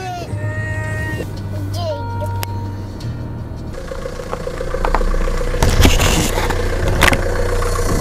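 Music with gliding electronic tones, then from about four seconds in the noise of a car running close by, loudest around six seconds.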